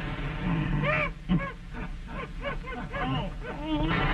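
Cartoon animal voice effect: a low grunt near the start, then a rapid run of short yelps that each rise and fall in pitch, about four a second, over the hiss of an old soundtrack.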